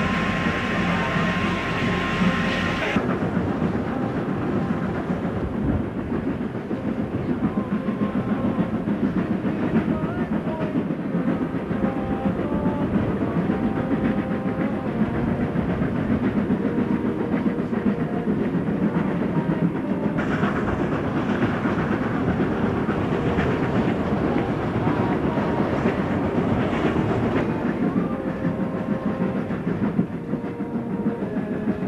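A steam-hauled train behind the Escatron 2-4-2 steam locomotive running at speed, heard from the carriages: rapid clatter of wheels and running gear over the rails with the locomotive's exhaust. The sound changes abruptly about three seconds in, after a steadier passage with ringing tones.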